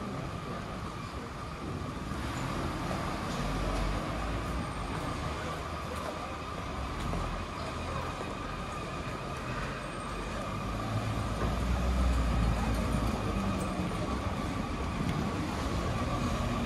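City street ambience with traffic noise. Low vehicle rumble swells in the second half as a car passes close, over a steady faint hum.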